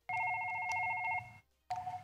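Multi-line desk telephone ringing with an electronic trill: one ring of about a second, then a short pause, and the next ring starts near the end.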